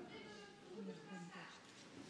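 Faint, indistinct murmur of voices.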